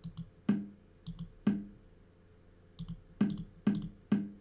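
Chess program's move sound effect, a short pitched knock that dies away, played five times as moves are made in quick succession. Before several of the knocks come pairs of light mouse clicks.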